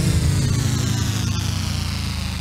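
Closing of a TV show's title jingle: a held low chord with a deep bass ringing out and slowly fading.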